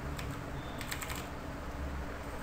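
A few light keystrokes on a computer keyboard, mostly bunched together about a second in, over a low steady hum.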